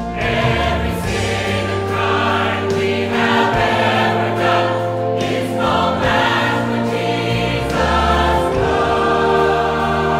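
Mixed church choir singing a worship hymn in full harmony, with sustained low accompaniment under the voices.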